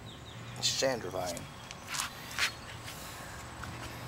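A few short rustling footsteps on garden grass and soil about halfway through, over a faint steady low hum.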